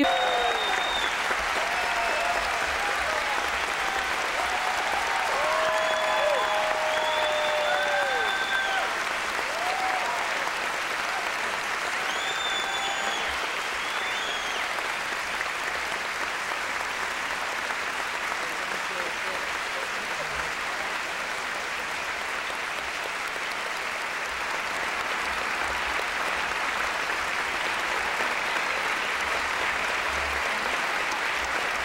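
A theatre audience applauding steadily throughout, with scattered cheering voices over the clapping in roughly the first half.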